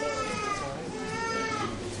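A baby or small child fussing with two drawn-out, high-pitched whining cries, faint under the room's reverberation.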